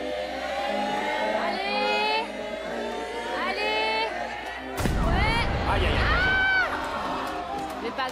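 Studio audience and players cheering and shouting encouragement over music. About five seconds in, a heavy bowling ball lands on the lane and rolls with a low rumble for about two seconds, ending up a gutter ball.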